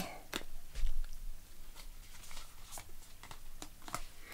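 Cards being handled and drawn from a small deck of heart-shaped angel message cards: soft, scattered rustles and clicks, with a dull low bump about a second in.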